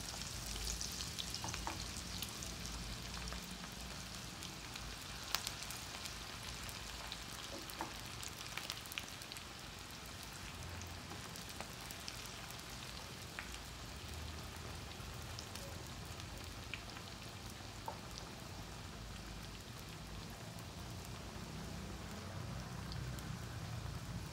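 Battered cauliflower pakoda deep-frying in hot oil in a steel pot: a steady sizzle with scattered crackles and a few sharper pops, a little louder in the first seconds as fresh pieces go into the oil.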